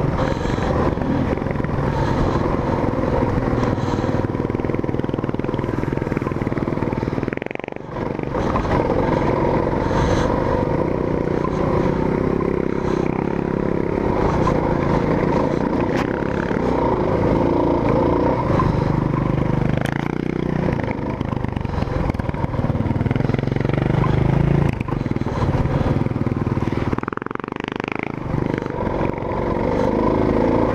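Single-cylinder dual-sport motorcycle engine pulling up a rocky dirt climb, the throttle rising and falling, with clatter from the bike over the rocks. The engine note drops briefly about eight seconds in and again near the end.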